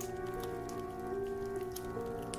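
Quiet ambient background music: a sustained drone of several held tones, with faint scattered ticks over it.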